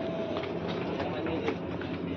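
Steady mechanical drone of a cold-storage room's refrigeration and cooling fans, with light scattered clicks and knocks.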